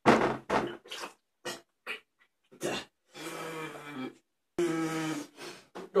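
Men groaning and breathing hard in pain from the burn of extremely hot chillies. First come several short, sharp exhalations, then two longer drawn-out groans.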